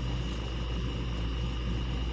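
Steady low rumble of background noise with a thin, faint high whine above it, unchanging throughout.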